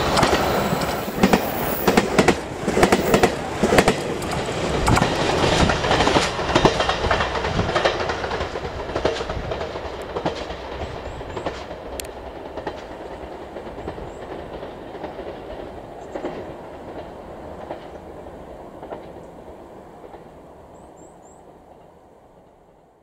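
JR Shikoku 2000-series diesel limited express train running through a station without stopping. Rapid rhythmic clatter of wheels over rail joints and the diesel engines are loud for the first several seconds. The sound then fades steadily as the train pulls away.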